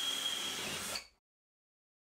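Ryobi cordless drill running steadily as it bores into cement backer board, with a thin high whine over the noise of the bit. It cuts off suddenly about a second in.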